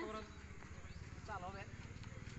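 A person's short call about one and a half seconds in, over a fast, even low patter.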